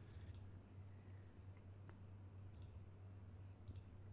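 Faint computer mouse clicks over a low steady hum: a quick cluster at the start, one more about two and a half seconds in, and a couple near the end.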